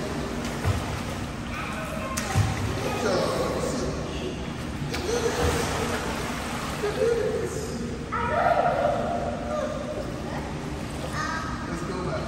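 Indistinct voices calling out in an echoing indoor swimming pool hall, over a steady background wash of water noise.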